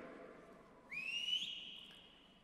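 One loud whistle that slides up in pitch about a second in and is then held on a steady high note, a person whistling in cheer for a graduate crossing the stage.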